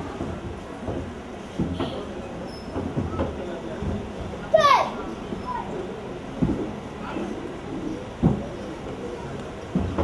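A karate student's solo demonstration: dull thumps of bare feet stamping on a wooden stage, and one loud, short shout about halfway through that falls in pitch, a kiai. A hall full of children chattering goes on throughout.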